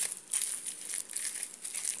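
Aluminium foil being folded and pressed tightly around a piece of cake by hand: irregular crinkling and crackling that comes and goes.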